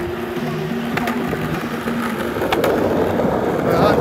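Skateboard wheels rolling on a concrete path, the rough rumble growing louder in the second half as the board comes close. Music with held low notes plays underneath.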